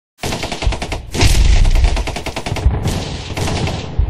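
Rapid bursts of sharp, gunfire-like cracks, about a dozen a second, loudest in the first half, with a brief break about two-thirds of the way through.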